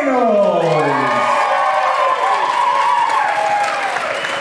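A crowd cheering and whooping in a large hall, opening with one long voice that falls in pitch over the first second.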